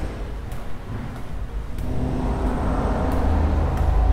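Low hum of distant road traffic, getting louder about two seconds in.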